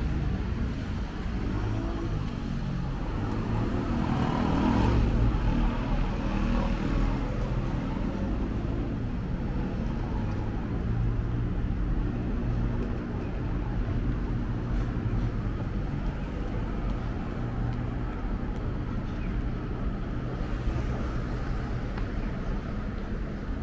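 City street ambience of steady road traffic, with a louder passing vehicle about four to five seconds in.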